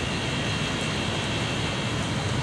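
Steady background hum and hiss with a constant faint high tone, unchanging throughout, typical of outdoor urban machinery or traffic noise.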